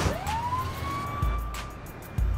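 Ambulance siren wailing: a single tone that rises over the first second, then holds steady, with a sharp hit at the start and background music with a low beat underneath.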